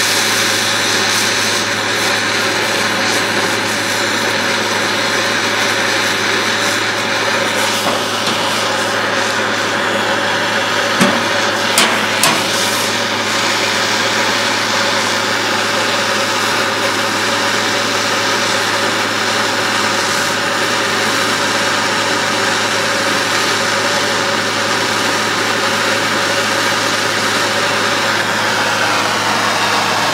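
Handheld propane torch burning with a steady hiss as its flame heats the neck of a glass bottle, with two brief clicks about eleven and twelve seconds in.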